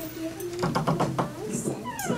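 High-pitched voices, words not made out, with a busier stretch of sound about a second in.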